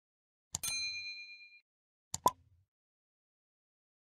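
Sound effects of a subscribe-button animation: a pair of mouse clicks, then a bright bell ding that rings for about a second and fades. About two seconds in comes another pair of mouse clicks, the second click louder.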